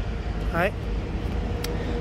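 A man's brief spoken syllable about half a second in, over a steady low rumble.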